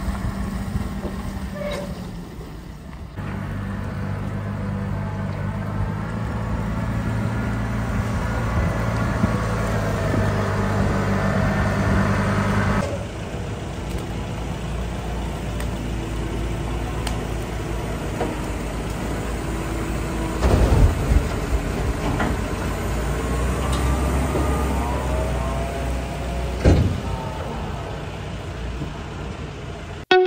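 Telehandler loading cattle muck into a tipping trailer: a diesel engine running steadily, later with a rising and falling whine, and two heavy thuds in the second half as loads of muck drop.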